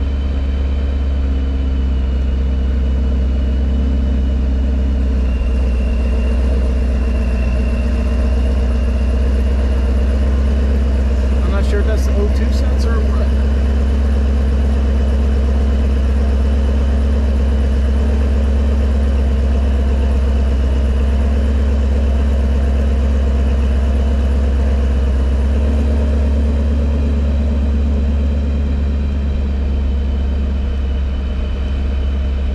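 Chevrolet Camaro 50th Anniversary engine idling steadily, heard from inside the cabin. A few sharp clicks come about twelve seconds in.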